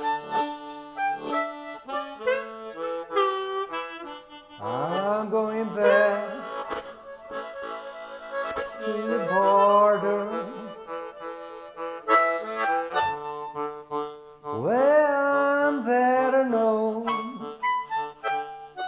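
Two layered blues harmonica parts playing an instrumental break between sung verses, with held chords and notes that bend and swoop up in pitch, most strongly about five seconds in and again near fifteen seconds.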